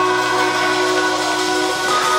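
A live rock band holding one sustained chord on electric guitars and keyboards over a cymbal wash, with a steady bass note beneath, moving to a new chord near the end.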